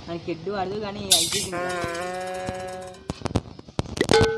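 Electronic sound effects: a short voice and a bright burst of noise, then a steady held chord for about a second and a half, followed by several sharp clicks near the end.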